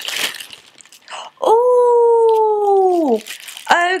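A woman's long, drawn-out vocal 'ooh', held for nearly two seconds and falling in pitch toward the end. A short rustle of packaging comes just before it.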